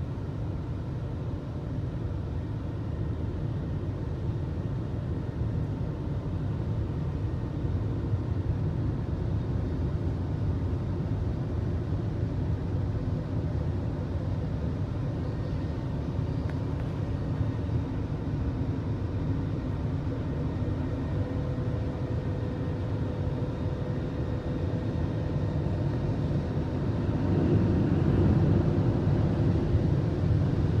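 Automatic conveyor car wash heard from inside the car: a steady low rumble of the wash machinery, getting louder near the end as the hanging cloth strips come onto the windscreen. A faint steady hum joins about two-thirds of the way through.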